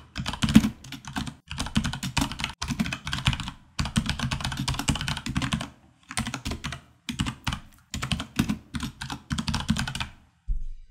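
Fast typing on a computer keyboard, the keys clattering in several quick runs broken by short pauses.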